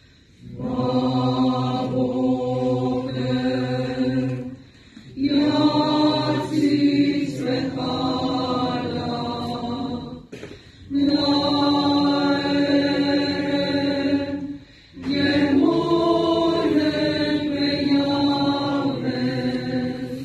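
Mixed choir singing a slow, chant-like piece in four sustained phrases, with short breaks between them.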